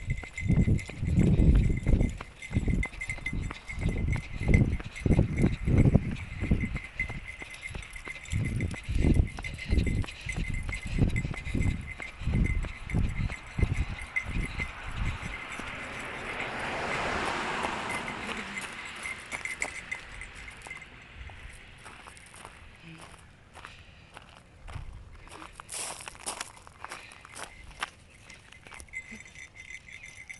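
Footsteps and phone handling of a person walking, low thumps about twice a second for the first fifteen seconds, over a steady high tone. A hiss swells and fades about halfway through, and scattered faint clicks follow.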